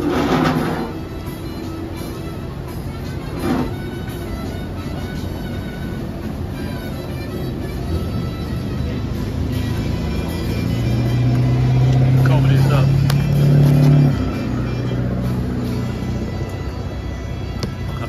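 A car engine running close by, its low hum swelling for a few seconds past the middle and then dropping away, over a steady background of outdoor noise.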